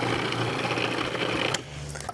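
Electric food processor motor running, grinding a mix of peanuts and dates into a sticky paste. It is switched off abruptly about one and a half seconds in.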